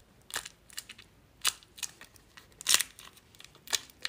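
A homemade fidget of bottle-top rings wrapped in clear tape being pressed and squeezed in the fingers, giving a string of short, irregular crinkly clicks, about nine in four seconds.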